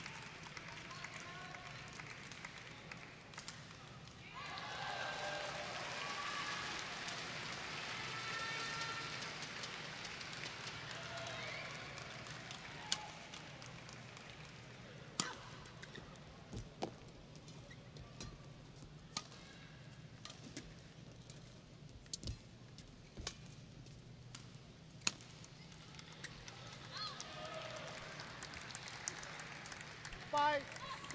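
Badminton rackets striking a shuttlecock in a rally: sharp single cracks every second or two through the second half, over the noise of an arena crowd. Before the rally, crowd voices and chatter rise for several seconds.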